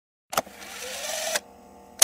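Edited intro sound effect: a click, then a rising whoosh of about a second that cuts off abruptly, and a sharp hit at the end as the picture zooms in.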